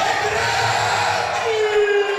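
A church congregation praising aloud: many voices calling out and shouting at once. About three quarters of the way through, a long held note comes in.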